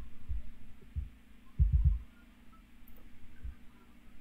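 A few dull, low thumps, including a quick run of three about halfway, over a steady low hum.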